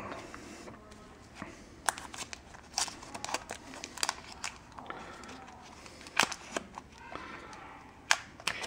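Foil booster-pack wrapper crinkling in the hands as it is handled and pulled at its sealed top, with scattered sharp crackles and clicks.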